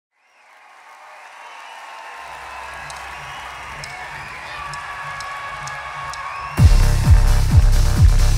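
Crowd noise in a concert hall fading in from silence, with a low synth pulse underneath. About six and a half seconds in, a big band's techno groove starts suddenly and loud on a steady four-on-the-floor kick drum, about two beats a second.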